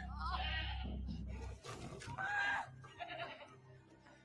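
A goat bleating faintly, twice in short calls in the second half, over a low rumble that stops abruptly after about a second and a half.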